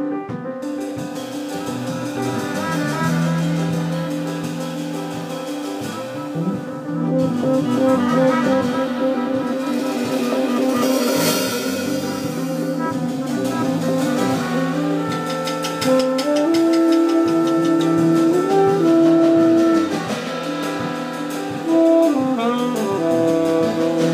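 Live jazz quintet playing an instrumental passage: trumpet and saxophone over piano, double bass and drum kit. The horns hold long notes in the second half.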